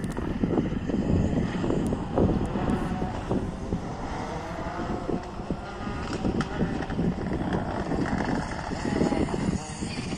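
Rally car engine heard from afar as the car runs along a gravel stage, under a rough, steady low rumble.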